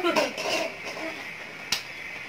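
A brief burst of voice at the start, then a single sharp snap near the end.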